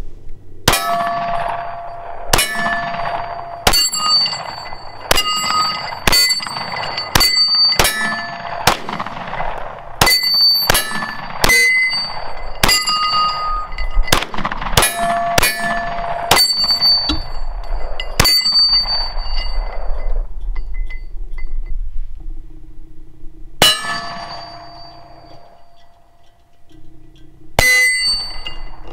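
9 mm pistol fired in a long steady string of shots, each hit answered by the bright ring of steel targets. About two dozen shots come through the first eighteen seconds or so, then after a pause a single shot, and another at the very end.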